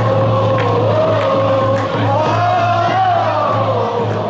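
Loud music with a stadium crowd singing a cheer song along to it, one wavering melody line rising and falling.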